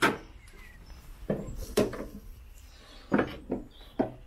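Peugeot 107 bonnet safety catch clicking free, then the metal bonnet being raised and propped open: one sharp click at the start, followed by a few softer knocks and clunks.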